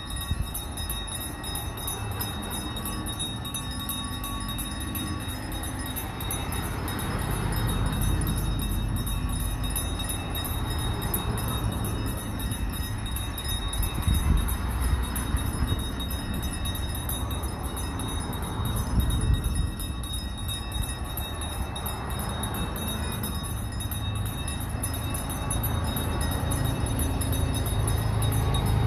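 Many handheld bells ringing together in a continuous, uneven jangle, over the low engine rumble of a slow line of cars and trucks driving past, which swells and fades as each vehicle goes by.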